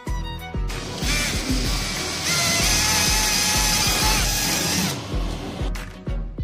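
Cordless drill boring a hole through a cabinet door for a handle. It runs for about four seconds, starting about a second in, louder through the middle and stopping near the end, over background violin music.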